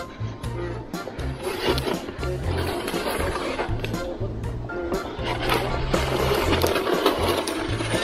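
Background music with a steady bass beat, over the scraping of a small ice sled's runners across pond ice and repeated short scratches and taps of its two ice picks jabbing the ice.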